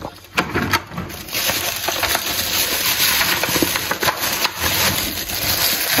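Thin plastic shopping bag rustling and crinkling as plastic-wrapped trays of chicken are taken out of it, with a few sharp clicks of handling near the start.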